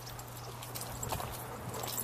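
Footsteps crunching on a dirt and gravel trail, a run of irregular short clicks, over a steady low hum.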